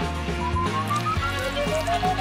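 Background music with a bubbly, gulping drinking sound effect laid over it: two rising, beaded glides in pitch, the second starting near the end.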